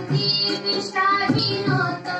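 A high voice singing a melodic song line, with drum beats underneath.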